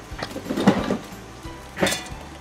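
Handling rustle as a soft fabric tape measure is taken up and unrolled: a longer rustle in the first second and a shorter one near the end, over light background music.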